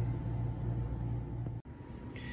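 Steady low background hum, cut off abruptly by an edit about a second and a half in, after which a quieter background continues.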